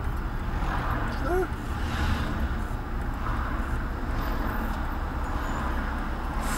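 Steady low engine and tyre rumble of a car driving, heard from inside the cabin, with a short vocal sound about a second and a half in.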